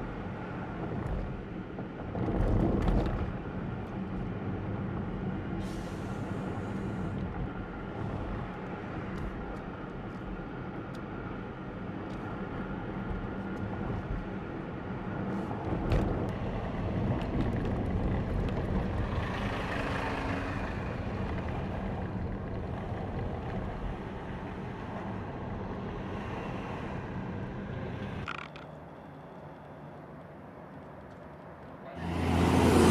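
Steady engine and tyre noise of a car driving past a column of heavy military trucks and armoured vehicles, heard from inside the car, with louder swells about two seconds in and again from about sixteen to twenty-one seconds as big vehicles go by. Near the end it drops suddenly to a quieter, distant vehicle hum.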